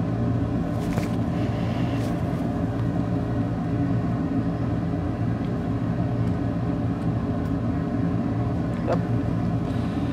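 Steady low machine hum with several even tones, the sound of a running motor or fan, with a few faint clicks about one and two seconds in.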